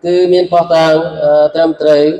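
A man chanting Quranic Arabic recitation, holding long level notes in a melodic, unaccompanied voice.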